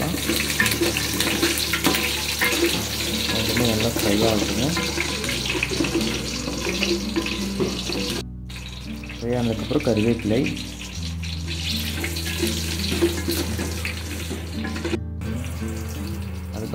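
Mustard seeds, shallots and green chillies frying in hot oil in an aluminium pot: a steady sizzling hiss with fine crackling from the popping seeds, stirred with a wooden spatula.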